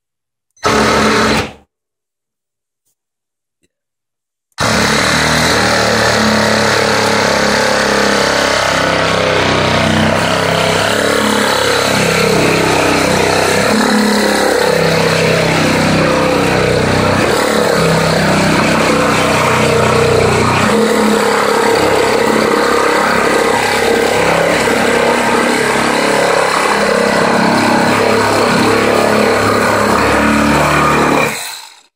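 Milwaukee M12 Hackzall (2420-20) cordless reciprocating saw with a wood blade: a brief burst of about a second near the start, then from about four and a half seconds it runs continuously, sawing through a 2x4. The board is not clamped in a vise, so it wobbles and vibrates against the blade during the cut.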